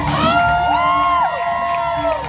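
Audience cheering and whooping, with several long whoops that rise and fall in pitch over one another, over music playing underneath.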